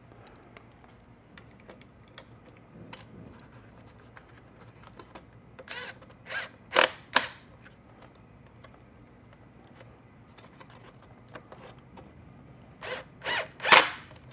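Small cordless screwdriver driving a Phillips screw into a motorcycle-fairing speaker adapter in short bursts: three or four quick runs about halfway through and another few near the end, with faint clicks of handling in between.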